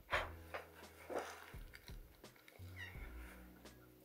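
A man coughing into his fist, two short coughs about a second apart, over faint background music. A brief high falling squeak is heard near three seconds in.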